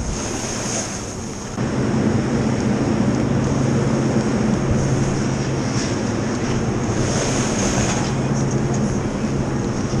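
A snowboard sliding and scraping over packed snow, with wind rushing over the camera's microphone as the rider goes downhill. The noise steps up louder about a second and a half in and then stays steady.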